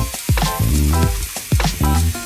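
Angle grinder's thin abrasive cutoff disc cutting through sheet steel, a steady hiss, under background music with a beat.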